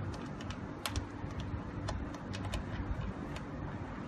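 Irregular small clicks and taps of test-lead connectors being fitted and tightened on the terminal posts of an overhead line fault locator's panel, over a steady low hum.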